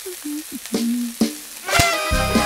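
Food sizzling in a frying pan, with a short run of low separate notes over it. Near the end comes a sharp pop, and music starts.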